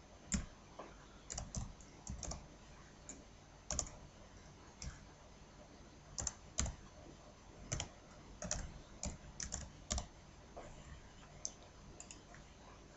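Typing on a computer keyboard: faint, irregular key clicks in short runs.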